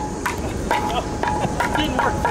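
A large string-thrown top spinning on asphalt, with a steady high tone that comes and goes, over bystanders' voices.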